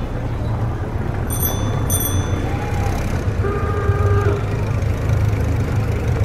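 Added street ambience: a steady low rumble of motor traffic, with two quick rings of a bicycle bell about a second and a half in and a horn sounding for about a second just past the middle.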